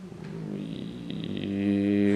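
A man's voice making a drawn-out, wordless hesitation sound that grows louder and settles on one low held pitch near the end.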